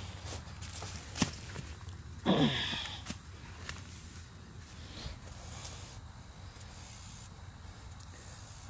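Faint rustling of corn leaves and husk as an ear of corn is reached for and handled. There is a sharp click about a second in, and a brief sound falling steeply in pitch about two seconds in.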